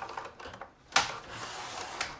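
A paper trimmer and a sheet of scrapbook paper being handled: one sharp click about a second in, with faint paper rustling around it.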